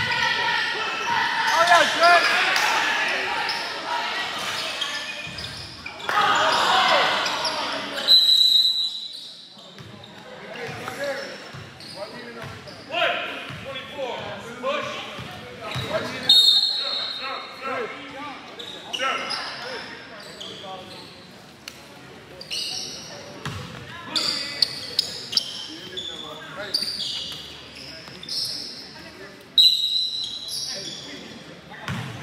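Indoor basketball game: spectators and players shouting over the thud of a basketball bouncing on the court floor, busiest for the first several seconds. A referee's whistle blows about eight seconds in, again about halfway through, and once more at the very end.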